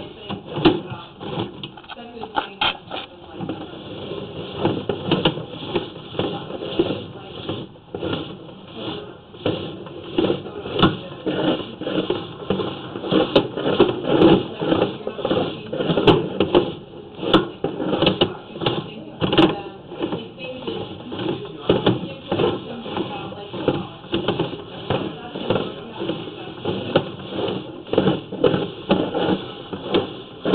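Muffled, indistinct talking picked up through a narrow-band microphone, with no clear words.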